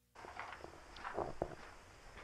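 Faint footsteps on a dirt floor: a few soft, uneven steps in the first second and a half.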